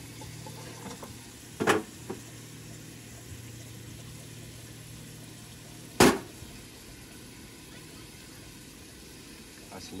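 Bacon frying in a pan on a camp gas stove: a steady sizzle over a low hum, broken by two sharp cookware knocks, one just under two seconds in and a louder one about six seconds in.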